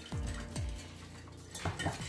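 A fork stirring yeast, sugar and warm water in a glass bowl, with a few light clinks against the glass near the end, over background music with a low beat.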